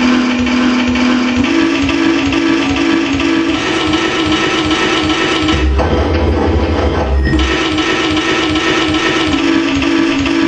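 Electronic noise instruments in a live noise-music performance: a loud, dense wash of noise over a low droning tone that switches back and forth between two pitches. A deep rumble swells in briefly just before the middle and stops about a second and a half later.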